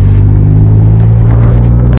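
Loud, steady drone of a car's engine and road rumble heard from inside the cabin of a moving car, holding one low pitch throughout.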